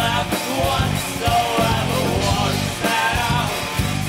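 Live rock band playing, with a man singing over a Roland Juno-G synthesizer and drums.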